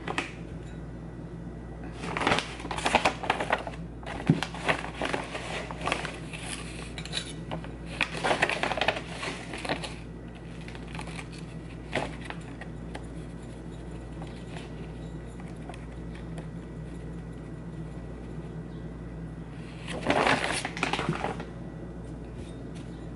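A plastic bag of potting soil being handled and soil worked into a small terra cotta pot: several bursts of rustling and crinkling, with a sharp click about twelve seconds in, over a steady low hum.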